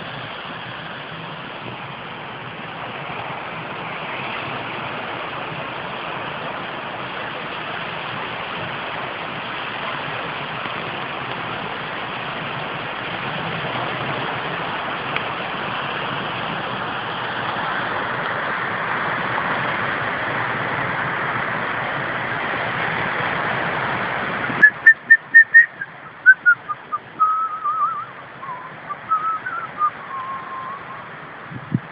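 Steady rushing beach ambience of wind and surf on a phone microphone, growing a little louder. Near the end it cuts off suddenly and a run of loud, short whistle-like notes follows, stepping down in pitch.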